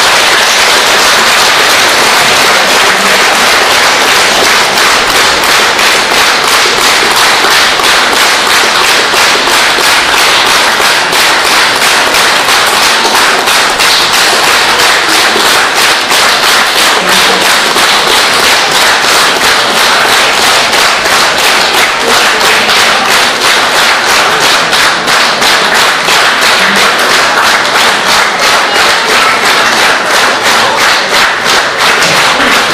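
A large indoor audience applauding loudly and steadily. In the second half the clapping falls into a more even, rhythmic beat.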